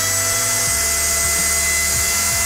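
Wall-climbing remote-control toy car's suction fan running: a noisy, steady high-pitched whine as the fan pulls air through the flexible skirt to hold the car against a wall.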